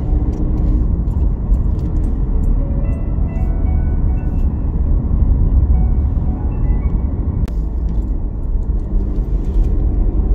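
Steady low rumble of a car's engine and tyres heard from inside the cabin while driving along a road, with quiet background music over it.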